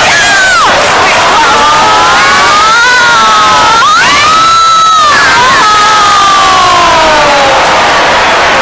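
Large stadium crowd cheering, with several long, high-pitched shouts gliding up and down over the steady crowd noise.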